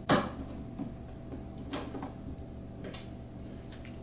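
Screwdriver turning a cam lock in a particleboard furniture panel: one sharp click at the start, then three fainter clicks about a second apart.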